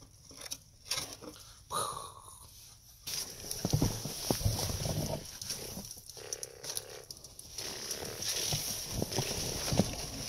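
A few light knocks as snow is tipped from a plastic toy loader bucket into a metal toy dump truck. From about three seconds in, snow crunches and scrapes continuously as the toy loader tractor is pushed by hand through it to fill its bucket.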